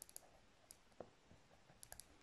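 Near silence with a handful of faint ticks from a pen writing on a textbook page.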